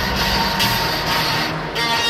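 Loud music from a stadium sound system over a roaring crowd, with a short dip about one and a half seconds in.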